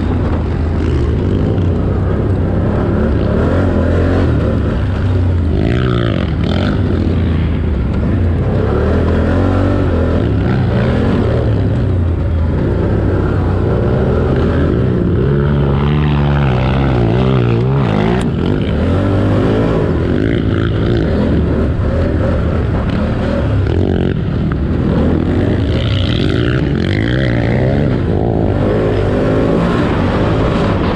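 Can-Am ATV engine running hard and revving up and down through the throttle as it is ridden over a rough dirt track, with wind rushing over the onboard microphone.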